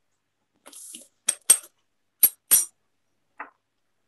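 Small glass spice jar of cinnamon being shaken and tapped over a mixing bowl: a brief soft rustle, then four sharp clinks and a faint fifth.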